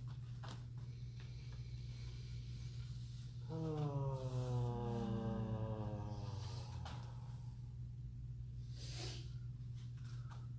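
A long, drawn-out vocal "ahh" sigh with a slowly falling pitch as deep massage pressure is held on the hip, then a short breathy exhale near the end. A steady low hum runs underneath.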